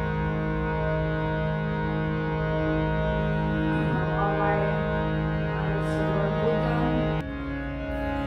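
Harmonium playing one sustained chord, a steady reedy drone. About seven seconds in it breaks off abruptly to a different, slightly quieter chord.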